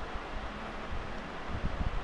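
Steady background hiss and low rumble of a recording microphone's noise floor, with a few faint low thuds near the end.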